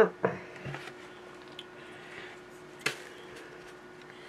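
Small handling clicks of things moved about on a workbench over a faint steady hum, with one sharper click about three seconds in.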